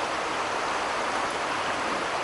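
Steady rush of a creek in flood, its brown floodwater running fast over the yard.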